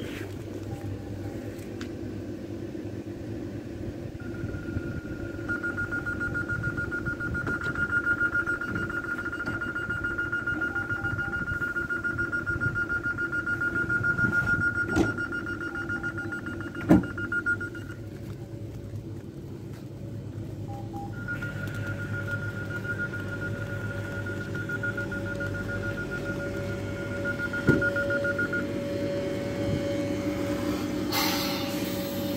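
Regio 2N electric train standing at the platform, its equipment humming steadily, while a high, rapidly pulsing electronic beep sounds for about thirteen seconds, stops, then resumes for about seven more. A few sharp knocks come in between.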